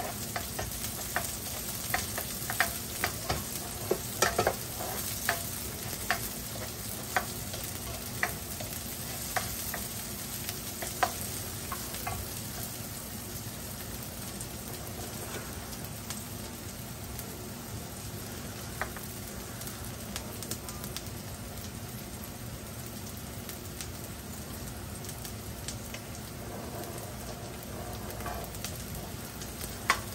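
Chopped garlic and shallot sizzling steadily in hot oil in a wok. A spatula clicks and scrapes against the pan many times in the first dozen seconds as the aromatics are stirred, then only now and then.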